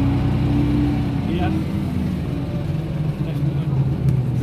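Leyland National Mark 1 bus's diesel engine running, a steady low drone heard from inside the saloon.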